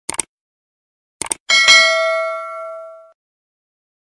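Subscribe-button animation sound effect: a quick double mouse click, another double click about a second later, then a bright bell ding that rings out and fades over about a second and a half.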